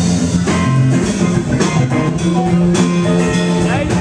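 Live funk band playing: electric guitars and keyboards over a bass line, with drum kit and congas keeping a steady beat.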